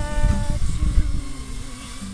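A woman singing to a strummed Epiphone acoustic guitar: she holds a note that ends about half a second in, then the guitar carries on over a low rumble.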